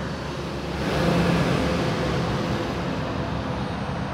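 Road traffic noise, with a motor vehicle going past that swells about a second in and then slowly fades.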